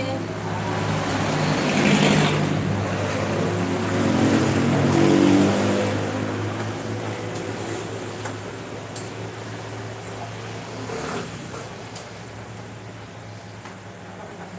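A motor vehicle's engine hum that swells over the first few seconds and then slowly fades, as if passing, with a few light clicks later on.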